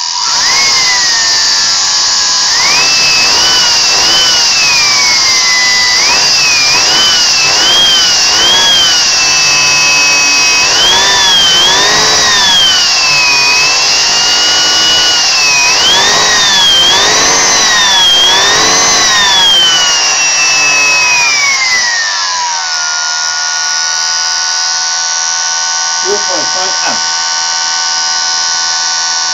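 Vacuum cleaner universal motor run from a variac straight to its brushes, its whine rising and falling again and again as the voltage is turned up and down, over a steady rush of air and brush sparking as it is overdriven to burn out the commutator. Near the end the whine drops and holds at a lower, steady pitch.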